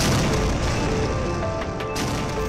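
Sound effect of a tank's 120 mm smoothbore cannon firing: one sudden boom at the start that dies away slowly into a long rumble, over soft background music.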